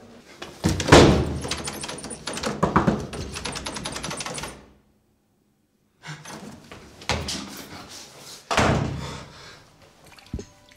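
A door being banged and rattled: a run of rapid knocks and heavy thuds, a second or so of dead silence a little past halfway, then more heavy thuds on the door.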